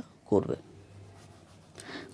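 Oil pastel rubbing on drawing paper as a branch is shaded in dark brown, faint and scratchy.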